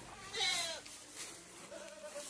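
A single short farm-animal call, falling in pitch, followed by a much fainter call near the end.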